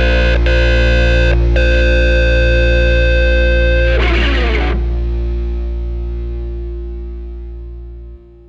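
The final chord of a rock song on distorted electric guitar, held with a couple of brief stops near the start. About four seconds in there is a short noisy scrape, and then the chord rings out and fades.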